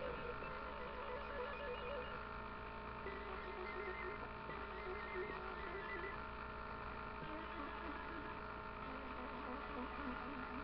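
Steady electrical hum, with a faint, distant voice wavering over it.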